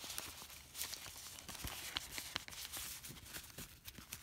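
Paper-wrapped adhesive bandages rustling and crinkling as they are handled and gathered into a stack, with many small, scattered ticks.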